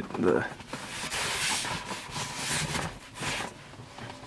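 Rustling and scraping of a fabric-covered folding solar panel being shifted on a minivan's dashboard, in a few short swells of noise.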